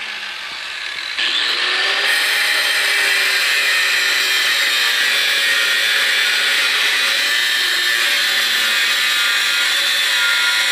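Angle grinder with a thin cutoff wheel cutting through steel angle iron. It is quieter for the first second or so with the wheel lifted off the metal, then the loud, steady cutting noise picks up again and holds.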